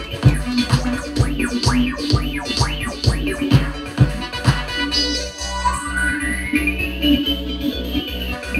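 Electronic dance music played through a DJ deck, its beat thumping about twice a second, with record-style scratching on the deck's platter over the first half. Later a long sweep rises and then falls in pitch.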